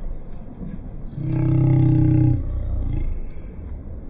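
A man's voice holding one low, flat note for about a second near the middle, over a steady low rumble of wind on the phone microphone.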